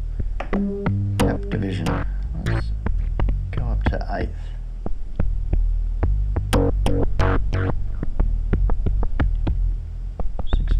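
Erica Synths Bassline DB-01 analogue bass synthesizer playing a sequenced bassline through a Strymon Timeline delay in its ducking mode, with repeated low pitched notes and clicky percussive strokes in a steady rhythm. The delay's tap division is being switched through dotted, eighth and sixteenth notes, changing the timing of the echoes.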